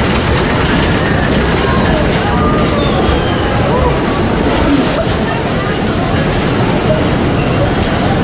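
Wooden roller coaster train rolling on its track through the station, a steady loud rumble, with people chattering over it.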